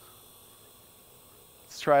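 Faint steady hum and hiss with a few thin high tones, then a man starts speaking near the end.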